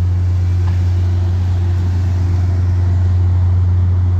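MBTA F40PH-3C diesel-electric locomotive's EMD 16-cylinder diesel running with a steady low drone.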